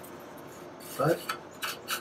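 A hand rubbing and brushing across the bare wooden top of a resonator guitar body around its freshly cut f-holes: a light scraping hiss, with a few sharper strokes in the second half.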